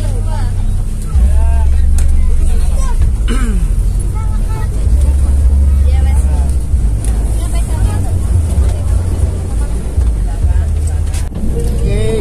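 Bus engine running with a low rumble heard from inside the passenger cabin. The rumble swells twice as the engine works harder, under the chatter of passengers.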